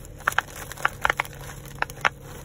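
Silicone pop-it fidget toy shaped like an octopus, its bubbles pressed with the fingers: about six short, sharp pops at uneven intervals. It pops really good.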